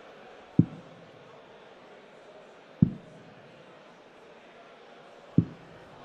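Three steel-tip darts striking a Winmau dartboard one after another, each a short sharp thud about two and a half seconds apart, over a low murmur of the arena.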